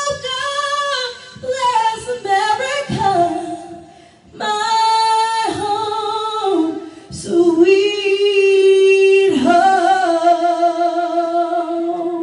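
A woman singing unaccompanied into a microphone, one voice moving through sustained notes with short breaths between phrases, and holding a long final note through the last few seconds.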